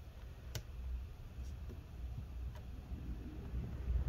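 A few light clicks from small parts being handled inside an opened laptop: one sharp click about half a second in, then two fainter ones, over a low rumble of handling.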